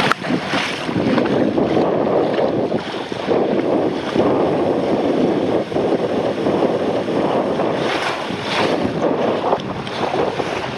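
Water rushing and splashing around a rider sliding down an open water slide, heard close up from a body-worn camera: a steady wash with a few louder splashes near the end.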